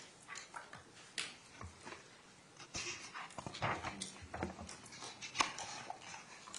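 Courtroom room noise: scattered soft knocks and rustling of people moving and handling things, busier in the second half.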